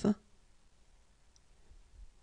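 The end of the French letter name "F" (effe) being spoken, closing on its "f" hiss just after the start. Then near-silent room tone, with a faint click near the end.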